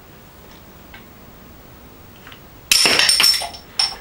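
Spring-loaded Zappa bottle-cap launcher firing with a sudden snap about two and a half seconds in, and the metal bottle cap clattering and ringing for about a second as it lands across the room. A few faint handling ticks come before it.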